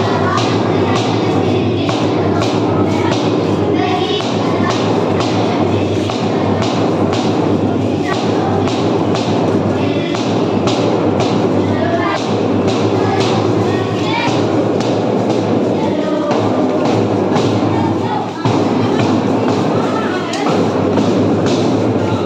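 A group marching in step on a hard floor, feet stamping a steady beat about twice a second, with music and voices underneath.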